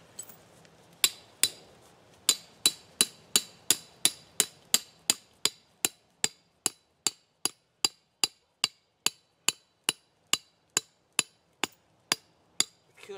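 Hammer driving an 18-inch rebar stake into the ground: a steady run of sharp, ringing metal-on-metal strikes, about three a second, starting about a second in.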